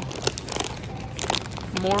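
Plastic bags of caramel baking morsels crinkling in short, irregular rustles as a hand grabs and pulls them in a cardboard display box.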